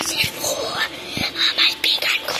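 A child whispering right up against a phone's microphone, in short breathy bursts.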